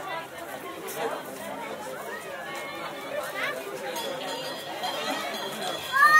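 Chatter of a crowd outdoors: several people talking at once, with no single voice clear.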